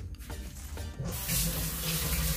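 Kitchen tap turned on about a second in, water running steadily into a stainless steel sink.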